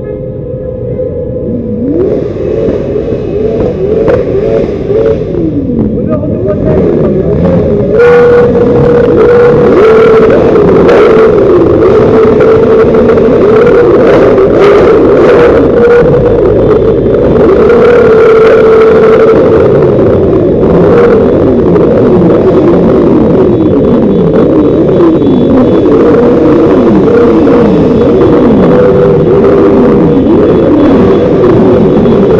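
Several vehicle engines revving up and down at once, their rising and falling pitches overlapping, with voices mixed in. The sound grows louder over the first several seconds and then stays loud.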